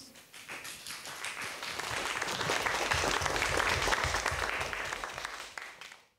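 Audience applauding, swelling over the first couple of seconds and dying away near the end.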